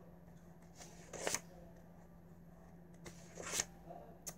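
Two brief rustles, about two seconds apart, from a small spiral notebook and pen being handled, over a faint steady hum.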